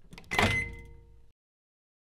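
Microwave oven door being opened: a faint latch click, then a louder clunk as the door swings open, with a short ringing tone that fades and cuts off suddenly after little more than a second.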